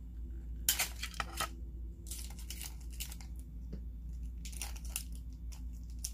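Tape being torn off and wrapped around a plastic egg and plastic spoons, heard in three short rustling, tearing bursts.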